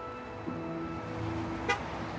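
City street traffic rumble with a car horn sounding one steady note for about a second, and a short click near the end.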